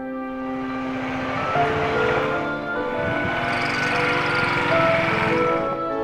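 Background music of soft held notes, with a motorcycle engine swelling louder and then easing as the bike rides past.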